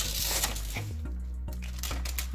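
Parchment paper rustling and scraping as a knife slits it along the crease, loudest in the first second, over background music with a steady bass line.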